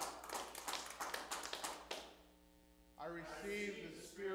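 Hands clapping in a quick, uneven run for about two seconds, then stopping; a man's voice comes back about three seconds in.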